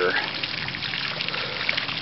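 Small round fountain's single vertical jet splashing steadily back into its water-filled basin, an even trickling wash of water.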